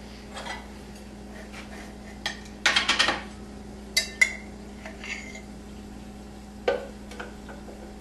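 A metal spoon clinking and scraping against a jar while scooping out almond butter: a few scattered taps and knocks, a quick cluster about three seconds in, and a short ringing clink about four seconds in.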